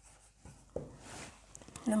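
Dry-erase marker writing on a whiteboard: a few faint short strokes and taps, with a longer scratchy stroke about a second in.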